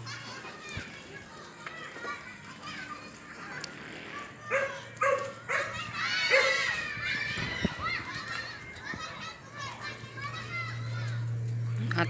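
Children playing and shouting in the street, their high-pitched calls loudest a few seconds in, over a steady low hum that grows louder near the end.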